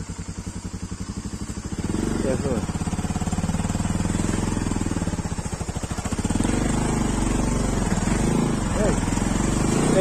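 Motorcycle engine running at low revs with an even pulsing beat, then louder and fuller from about two seconds in as the bike pulls along.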